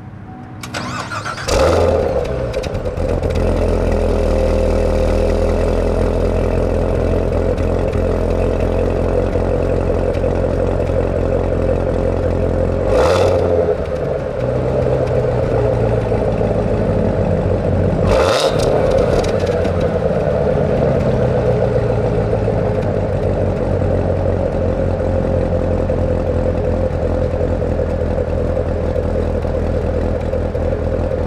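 2015 Corvette Z06's supercharged 6.2-litre V8 starting up through its quad centre exhausts about a second and a half in, then idling loud and steady. Two short sharp bursts break into the idle about halfway through and again some five seconds later.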